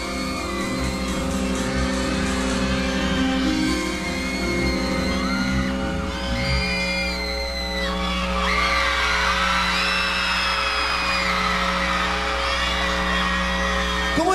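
Live pop-rock band playing in a large hall: a repeating low pulse for about the first half, then long held chords. From about halfway, audience members whoop and scream over the music.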